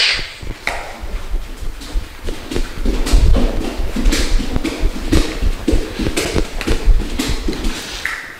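Bare feet stomping and slapping on a hard floor during frantic dancing: an irregular run of low thumps and sharp taps.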